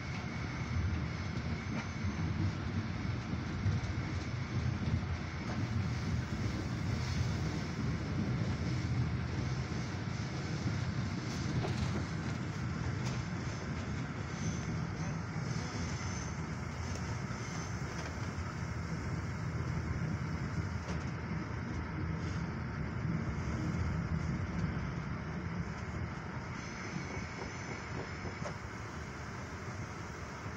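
Steady rumble of an InterCity passenger train's wheels running on the track, heard from inside the coach. It gets a little quieter near the end.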